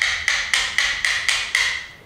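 Small hammer tapping the steel chipbreaker (ura-ba) of a Japanese hand plane (kanna) down into its wooden block, about four light strikes a second, each with a short ring. This is the stage of closing the gap between the chipbreaker and the main blade's edge when setting the plane.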